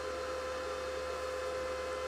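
Steady background hum with one constant mid-pitched tone over a faint even hiss.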